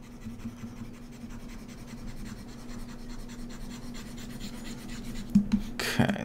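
Faint scratchy rubbing of hand movements at a computer desk over a steady low electrical hum. A short, sharp breath close to the microphone comes near the end.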